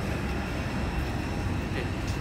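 Steady low rumble of outdoor background noise with a faint steady high whine, no distinct events.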